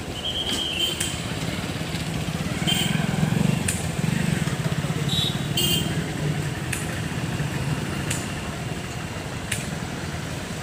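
An engine running steadily, a little louder between about three and four and a half seconds in, with a few short high-pitched sounds and clicks over it.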